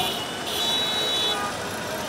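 Busy city-street traffic, with rickshaws, auto-rickshaws and buses passing and crowd voices mixed in. A high-pitched horn sounds for about a second, starting half a second in.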